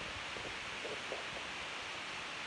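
Steady background hiss with faint handling sounds as a canvas sneaker is turned over in the hand.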